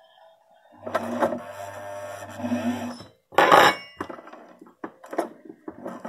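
Electric sewing machine running and stitching for about two seconds, with a steady motor hum under the rattle of the needle. A louder sudden noise follows, then a few shorter ones.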